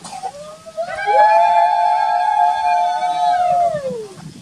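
A long, high-pitched held tone lasting about two and a half seconds, rising as it begins and sliding down at the end.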